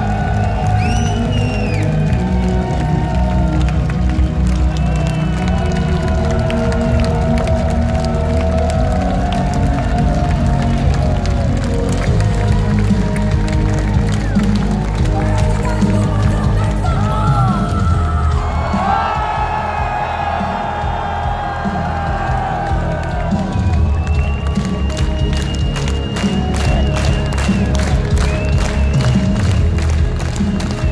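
Music over a large outdoor concert PA with a festival crowd cheering. Near the end a steady, evenly spaced beat comes in.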